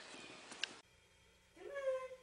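A cat meows once near the end, the pitch rising and then levelling off. Before it there is a single faint click.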